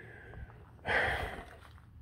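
A man's short breath out, lasting about half a second, about a second in.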